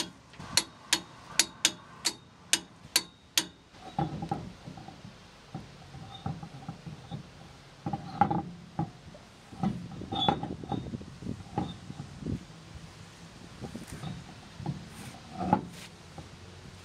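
A torque wrench clicking on the wheel-spacer nuts: eight sharp metallic clicks in about three seconds. Then come irregular dull clunks and knocks as the wheel is hung on the spacer and its lug nuts are started by hand.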